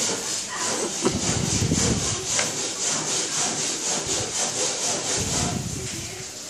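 Rhythmic rasping scrape, several even strokes a second, with low rumbling handling noise mixed in twice.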